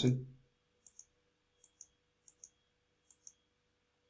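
Computer mouse button clicking four times, each a quick double tick of press and release, as numbers are entered on an on-screen calculator.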